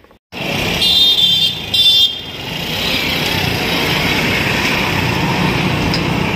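Roadside traffic: vehicle engines running with a steady rumble, and two short high horn honks about one and two seconds in.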